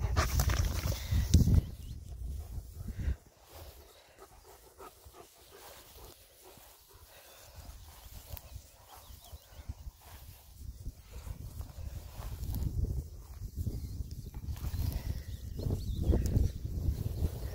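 German Shepherd panting close by, with wind rumbling on the microphone. About three seconds in it goes much quieter, leaving faint rustles and steps in the grass. The wind rumble builds again in the last few seconds.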